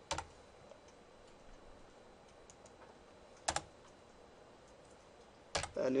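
A few separate computer keyboard keystrokes: one just after the start, a quick pair about three and a half seconds in, and another near the end, with long gaps between them.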